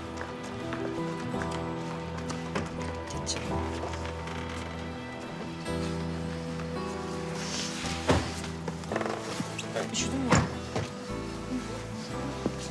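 Dramatic background music with long held notes throughout, with a few sharp knocks in the second half.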